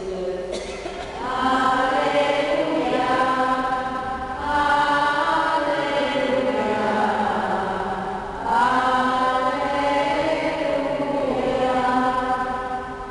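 Voices singing a slow liturgical chant in three phrases of about four seconds each, with long held notes and short breaks between phrases.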